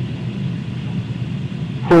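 A steady low hum, with no distinct sound over it.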